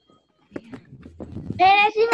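A child's high-pitched voice coming in over a video call, starting about a second and a half in with a wavering, drawn-out pitch. A few faint clicks come before it.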